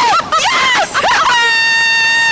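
Two women screaming on a slingshot thrill ride. Short high-pitched yelps give way, about two-thirds of the way in, to one long held high scream.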